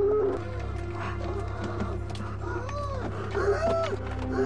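Animal calls, a series of rising-and-falling cries about half a second each, mixed with background music.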